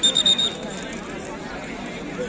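Referee's whistle blown once as a short, high, steady blast of about half a second, the signal for the penalty kick to be taken. Faint crowd chatter follows.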